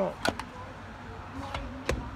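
The charge port covers on a Nissan Leaf's nose being shut by hand: two light clicks a fraction of a second apart just after the start, then a sharper click near the end as the outer charge port lid is pressed closed.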